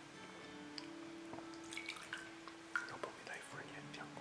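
Water poured from a glass cruet into a metal chalice to rinse it, splashing and trickling with a few small clinks, the loudest about three seconds in. Soft sustained music notes run underneath, with faint murmured words.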